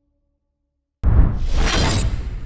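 A second of silence, then a sudden loud crash sound effect from an intro template. It has a deep low boom and a hiss that swells up high as it goes on.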